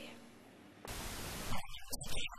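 Near silence, then about a second in a steady hiss of recording noise starts abruptly, with faint choppy fragments of a man's voice near the end.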